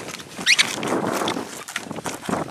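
Serpentine stones being rubbed back and forth on sandpaper, a rough continuous scratching, with a brief high squeal about half a second in.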